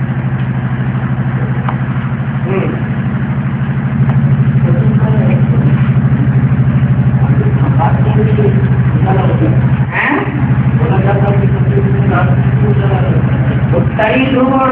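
A loud, steady low hum with a fast regular pulse, like a running motor, under faint talking. The hum grows louder about four seconds in and drops out briefly around ten seconds.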